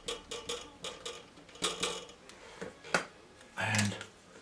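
Short, scratchy dabs and scrapes of a painting tool on wet watercolour paper as rocks are put in along a shoreline, with a sharper click about three seconds in. A brief low vocal sound comes near the end.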